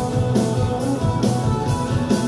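Live rock band playing: electric guitars, keyboard and drum kit, with the cymbals keeping a steady beat about twice a second.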